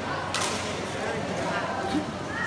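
A badminton racket striking the shuttlecock once with a sharp crack about a third of a second in, with a fainter hit near the end, over the chatter of voices.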